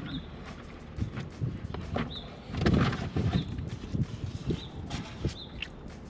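A bird outside giving short, high chirps every second or so, over the small clicks and knocks of eating from a takeout container with a fork, with a louder rustle about halfway through.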